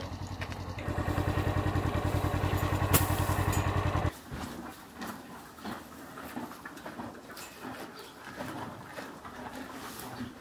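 An engine running with a rapid, even pulse, steady and fairly loud, that cuts off abruptly about four seconds in. After that there are only soft scattered clicks and rustles.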